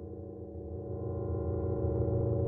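A sustained drone of several steady tones, strongest low down, slowly swelling in level: a soundtrack drone.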